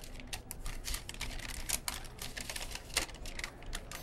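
A sheet of paper being unfolded and handled: a run of small, irregular crinkles and ticks, several a second.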